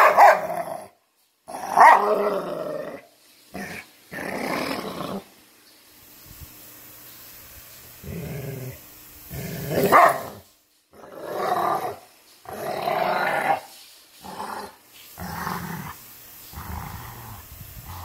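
Two dogs, a black-and-tan puppy and a larger black dog, growling at each other in rough play-fighting, in irregular bursts with short gaps; the loudest bursts come near the start, about two seconds in and about ten seconds in.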